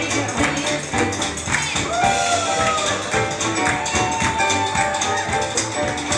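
Upbeat 1920s-style jazz band music with a steady beat, a melody line sliding in pitch about two seconds in.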